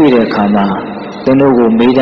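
A man's voice speaking: a Buddhist monk's sermon in Burmese, two phrases with a short pause between them about halfway through.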